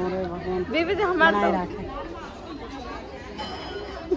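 Speech: several people chattering. One voice is close and clear for about the first two seconds, then quieter talk runs on behind.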